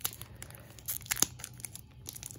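Foil wrapper of a Pokémon TCG booster pack crinkling and crackling in the hands as it is picked at and pulled to tear it open, a stubborn seal that won't give. Scattered sharp crackles, the strongest about a second in.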